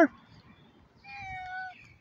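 A domestic cat meowing once, about a second in: a single short call whose pitch sags slightly toward its end.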